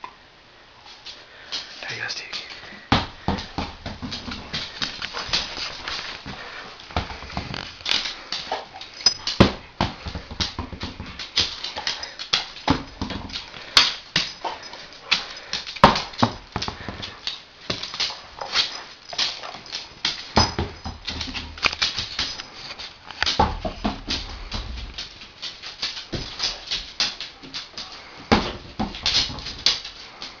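German shepherd chewing and mouthing a treat-stuffed red rubber Dental Kong, a dense, irregular run of sharp clicks and knocks from teeth on rubber and the toy knocking on a hardwood floor.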